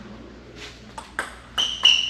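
Table tennis rally: a celluloid/plastic ball clicking sharply off paddles and the table, about five hits, louder in the second half. A high-pitched squeak joins the hits near the end.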